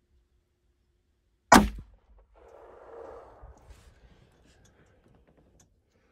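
A single loud handgun shot about a second and a half in, followed by a fainter tail that dies away over about a second.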